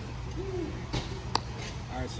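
Low steady outdoor background rumble, with a brief hummed sound from a man's voice about half a second in and a single sharp click just after a second.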